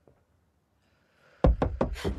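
Hands banging on a car's side window from outside, heard from inside the car: a quick run of about four loud knocks on the glass that starts abruptly about a second and a half in, after near silence.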